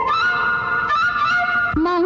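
A 1960s Tamil film sad song: a long high note held steady for over a second over the accompaniment, then a lower singing voice comes in near the end.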